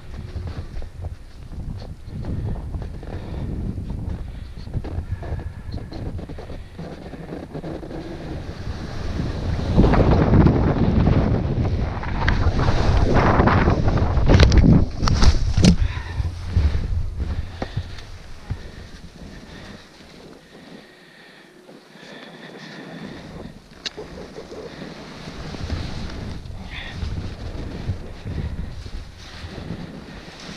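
Wind buffeting an action camera's microphone as a skier descends a steep snow slope, with the hiss of skis on snow. From about ten to sixteen seconds in it swells into a loud, rough rush with a few sharp knocks as the skier falls and tumbles in the snow, then settles to quieter wind noise.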